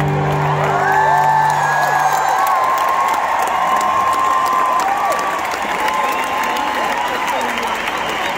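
A stadium crowd applauding and cheering as a song ends, with scattered high whoops and screams. The song's last held chord fades out about two seconds in.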